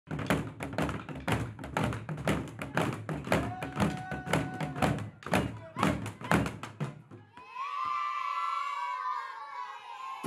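A group of children beating tall wooden Rwandan drums with sticks, a fast run of strikes, about three or four a second. The drumming stops about seven seconds in and the children's voices join in one long held call.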